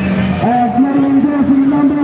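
A loud voice close by, starting about half a second in and going in drawn-out, wavering tones.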